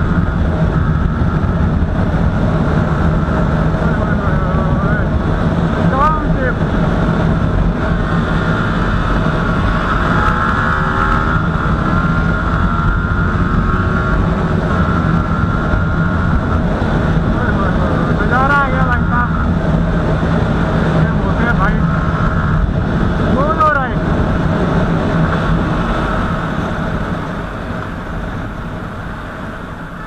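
Sport motorcycle cruising at about 100 km/h in fourth gear: a steady engine hum under heavy wind rush on the microphone. The sound eases off over the last few seconds as the bike slows.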